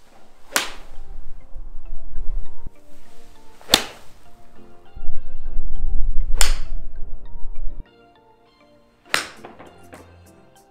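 Four crisp golf shots, an iron striking the ball off a range mat, about three seconds apart, over background music whose heavy bass cuts out about three-quarters of the way through.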